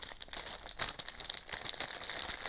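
Plastic packaging crinkling as small mounting hardware is handled: a dense, irregular run of crackles.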